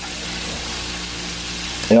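Flour-coated chicken drumsticks deep-frying in a pot of hot oil, a steady sizzle, about four minutes into cooking.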